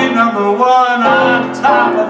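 Male voice singing a show tune with a wavering, vibrato-laden line, over piano accompaniment.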